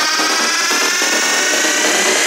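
Psychedelic trance breakdown: layered synthesizer lines slowly rising in pitch with no kick drum or bass, a build-up riser.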